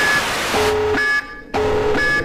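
TV static hiss with a repeating electronic beep over it. A low tone lasting about half a second sounds roughly once a second, alternating with a short higher beep, like a 'please stand by' test-card signal. The hiss thins about two-thirds of a second in.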